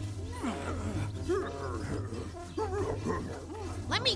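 A cartoon animal character's voice making a string of short, wordless grunts and whines that rise and fall in pitch, over background music.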